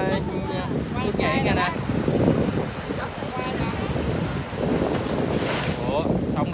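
Wind buffeting the microphone over surf washing onto a sandy, rocky shore, with a brief surge of wash near the end.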